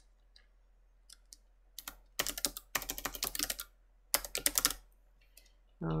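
Typing on a computer keyboard: a few single key presses, then two quick runs of keystrokes, about two seconds in and again about four seconds in.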